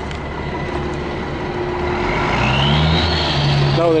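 A motor vehicle's engine running nearby, rising in pitch and level about two seconds in with a climbing whine, then holding steady.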